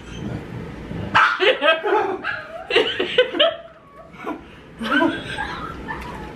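Laughter and wordless voiced outbursts in three short bursts, a reaction to the burn of an extremely hot sauce.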